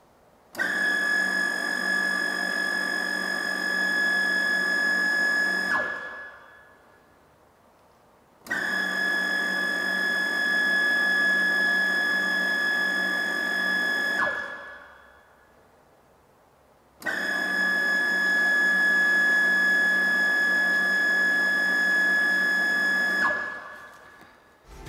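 m-tec duo-mix connect mixing pump switched on three times, running about five seconds each time with a steady high whine while water flows through it. Each run ends with the pitch falling as the machine winds down.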